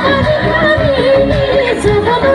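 A woman singing an Assamese song into a stage microphone with live band accompaniment, holding and bending long melodic notes.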